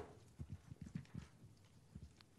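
Faint handling noise near the podium microphone: one sharp click, then a handful of soft, low knocks over the next second or so, like footsteps and things being set down at the podium.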